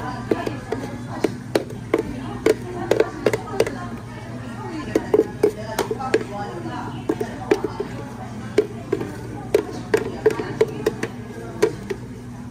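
Repeated sharp knocks of a plastic blender jar being tapped against a glass rim and shaken to get a thick frozen yogurt smoothie to slide out, in irregular clusters throughout, over a steady low hum.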